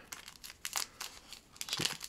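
Thin plastic card sleeves and team bags crinkling as they are handled, in a run of small, irregular crackles.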